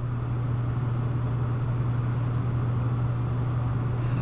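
A steady low hum with a faint even hiss above it, unchanging throughout.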